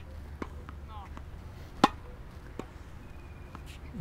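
A tennis ball is struck by a racket: one sharp, clean hit about two seconds in, a drop shot volley at the net. A few much fainter ball taps come before and after it.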